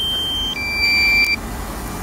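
Electronic warning beeps from a DJI Mavic Air drone's remote controller: a steady high tone, then a slightly lower one about half a second in, stopping about a second and a half in. It is the low-battery warning, which comes at about four minutes of flight time left.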